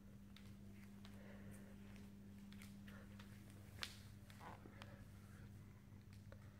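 Near silence: room tone with a steady low hum and a few faint clicks, one a little sharper just before the four-second mark.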